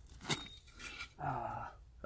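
Faint scraping of dirt and a light click about a third of a second in as a buried glass bottle is worked loose from the dirt wall of a dig hole by hand and a small digging tool. A brief low murmur of a voice comes a little past halfway.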